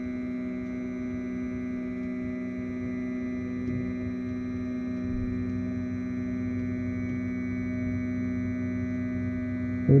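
Flashforge Dreamer NX 3D printer driving its build platform down on the Z axis: a steady whine of several held tones from the motor and the platform sliding on its guide rods. It is the squeaking that comes from rods that need grease.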